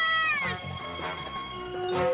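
A cartoon pterodactyl's screech: a held high cry that falls in pitch and breaks off about half a second in, over background music.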